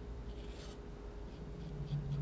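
Metal palette knife scraping and smearing paint on paper, faint, with one brief scrape about half a second in.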